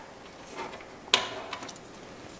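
Hard plastic parts being handled: the RC truck's front grille piece against its plastic body shell, with a faint rustle and one sharp plastic click about a second in.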